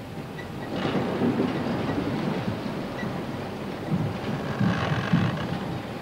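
Steady rumbling noise of log-handling machinery at a pulp mill's timber intake, with a few irregular low thuds.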